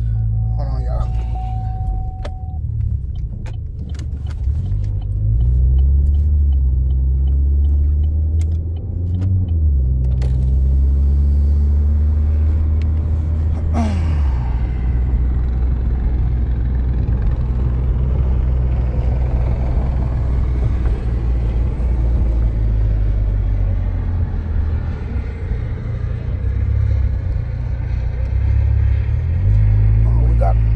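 Car being driven, heard from inside the cabin: a loud, low engine and road rumble that shifts in pitch a few times, with scattered clicks in the first ten seconds and a hiss of road noise joining about ten seconds in.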